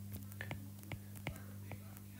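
A stylus tapping and ticking on a tablet's glass screen while handwriting: about nine small, irregular clicks. A steady low hum runs underneath.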